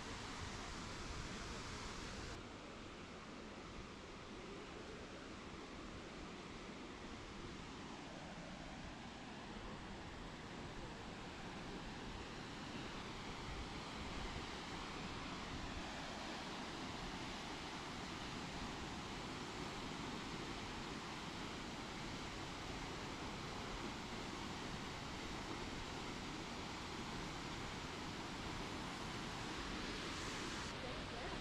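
Steady rushing noise of a large waterfall, Tortum Waterfall's water pouring down its rock face. The sound changes slightly in tone about two seconds in.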